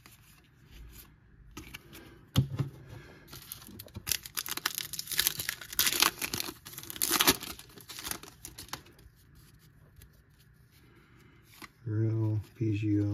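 A Topps trading-card pack's foil wrapper being torn open and crinkled by hand: a dense crackling stretch from about four seconds in to nearly nine seconds, after a single sharp click a couple of seconds in.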